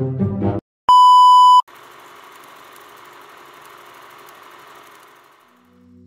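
Music cuts off abruptly, then a single loud, steady electronic beep lasting under a second. A faint hiss follows and fades away, and low sustained string notes begin near the end.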